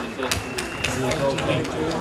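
Indistinct voices talking, with a few scattered hand claps in the first second.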